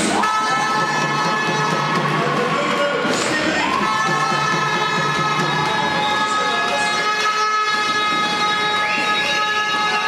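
Several air horns blowing long, overlapping held notes over crowd noise in a sports hall, a new note sliding up in pitch about three and a half seconds in.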